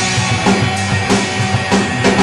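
Live rock band playing an instrumental passage: electric guitar over a drum kit with a steady beat of kick and snare hits, with no vocals.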